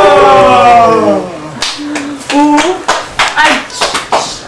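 A loud, long held vocal note, falling slightly in pitch, that stops about a second in. It is followed by a quick, uneven series of hand claps mixed with short vocal sounds.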